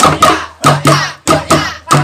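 Improvised percussion of sticks beating hand-held wooden frames and plastic containers in a fast, loud rhythm of about five strikes a second. This is the patrol-sahur beat played to wake residents for the pre-dawn Ramadan meal.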